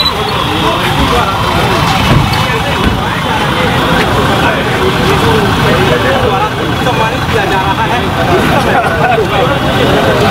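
Several people talking at once, overlapping and indistinct, over a steady low rumble.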